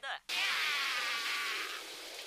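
A dense din of many overlapping chirps and calls, like a swarm, from the anime soundtrack: "lots of noise", which a character takes for birds. It starts about a quarter second in and fades out near the end.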